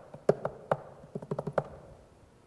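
Typing on a laptop keyboard: separate keystrokes, then a quick run of about half a dozen in the second half.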